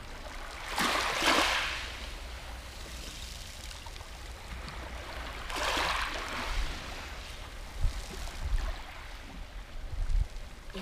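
Small waves washing up a pebble shore, two hissing surges about five seconds apart, over a steady low rumble, with a couple of low thumps near the end.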